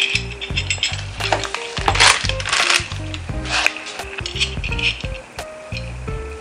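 Background music, with clicks and rattles of a camera-cage side handle's metal clamp being handled, the loudest bursts about two seconds in.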